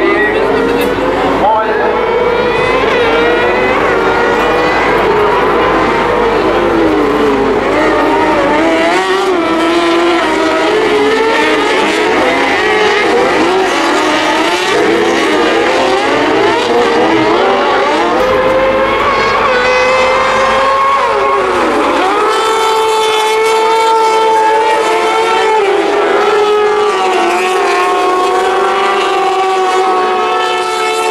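Several kartcross buggies racing together, their high-revving motorcycle engines rising and falling in pitch through throttle and gear changes. From about 22 seconds in the engine notes hold steadier.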